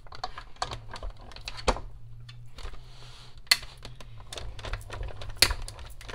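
Clear acrylic cutting plates, metal dies and cardstock being handled and stacked, making a string of irregular clicks and plastic knocks, with a short sliding rustle about halfway through.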